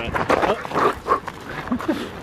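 A dog making a series of short, irregular noises while playing over a stick.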